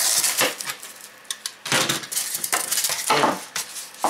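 Foil-faced foam insulation board being snapped along a scored line and its foil facing cut through with a utility knife: several short, noisy scrapes.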